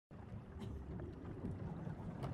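Sailing-ship-at-sea ambience: a faint, steady low rumble of wind and water with a couple of light knocks.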